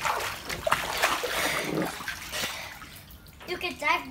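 Water splashing as a child thrashes his arms face-down in the shallow water of an inflatable paddling pool. The splashing dies down after about two and a half seconds.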